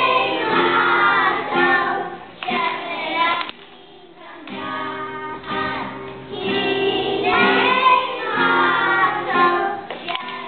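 A group of young children singing a song together, accompanied by an acoustic guitar, with a short break between phrases about four seconds in.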